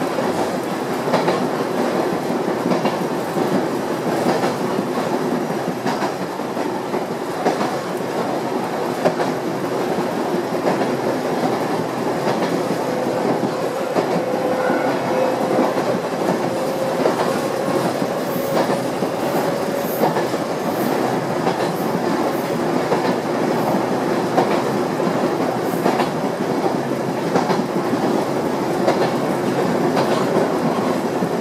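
Yoro Railway electric train running along the track, heard from inside the rear cab: a steady rumble of wheels on rail, with the clack of rail joints passing under the wheels.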